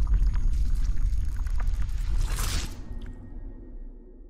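Logo-intro sound effects: a deep, heavy rumble with scattered crackles and splashy hits, a brief loud rush of hiss about two and a half seconds in, then fading away near the end.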